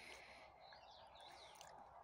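Near silence with faint bird chirps in the background.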